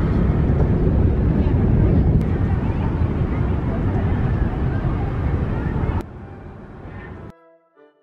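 Wind buffeting the microphone, a loud rough rumble that drops off sharply about six seconds in and cuts out just before the end.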